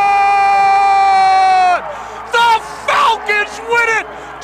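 Sports announcer's excited shout, one long held note that drops off about two seconds in, followed by short excited shouts.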